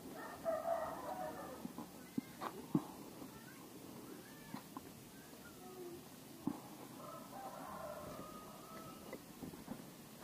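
A rooster crowing twice, once at the start and again about seven seconds in, with a few short sharp clicks in between.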